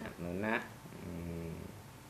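A man's voice speaking a short phrase in Thai, ending on a low syllable held steady for about a second.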